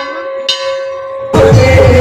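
A metal temple bell is struck once about half a second in and rings on. About a second later, loud music cuts in abruptly.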